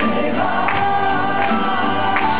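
A live acoustic rock band playing, with voices singing together over strummed acoustic guitars and drums. A percussion hit falls about every three-quarters of a second.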